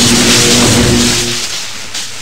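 Loud electrical crackling and sizzling as current arcs through swamp water, with a steady buzzing hum under it. It fades away about one and a half seconds in.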